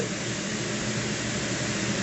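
Steady, even hiss of machine-like background noise in a small room, with no pitch, clicks or changes.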